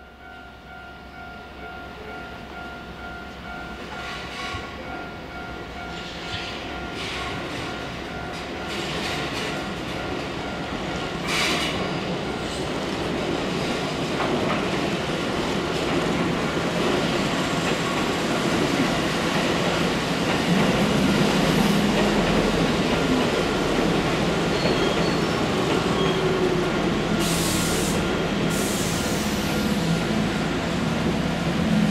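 Keihan Electric Railway electric train approaching and running past on a curve, growing steadily louder over the first half and then holding. Its wheels screech briefly on the curve, about eleven seconds in and again twice near the end.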